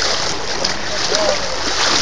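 Water splashing and churning steadily around something standing in a current, a continuous rushing wash.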